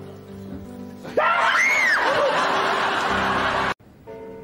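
A shrill scream rising and falling in pitch, starting suddenly about a second in over loud crowd noise and background music, all cut off abruptly just before the end.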